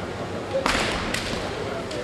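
Kendo exchange: a sharp crack of a bamboo shinai striking armour, with a shouted kiai, about two-thirds of a second in. A second, smaller crack follows about half a second later.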